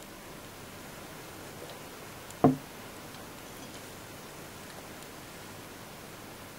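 A mouthful of cider swallowed from a pint glass: one short, loud gulp about two and a half seconds in, over faint room hiss.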